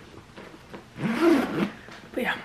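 A short voiced sound, not words, about a second in, sliding up and then down in pitch over well under a second.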